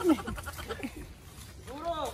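Short wordless vocal cries: a loud one falling in pitch at the start and an arching, rising-then-falling one near the end.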